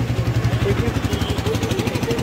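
A small engine running steadily close by, with an even rapid pulsing, like a motorcycle or similar small vehicle idling.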